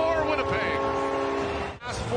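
Arena goal horn sounding one steady, many-toned blast over a cheering, clapping crowd after a home goal; it cuts off abruptly near the end.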